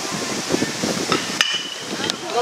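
Baseball bat hitting a pitched ball about one and a half seconds in: a single sharp crack followed by a brief ringing ping.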